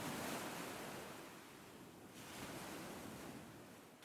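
Faint ocean surf: a soft, even wash of waves that fades, swells again a little after two seconds in, and dies away near the end.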